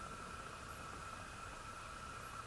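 Faint steady hiss of room tone with a faint steady high tone in the background; no distinct sound event.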